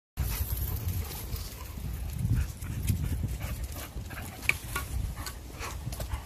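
Doberman panting, over a steady low rumble.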